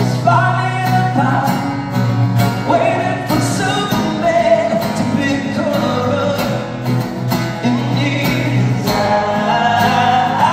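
A male singer performing live, singing a held, sustained melody over a strummed acoustic guitar.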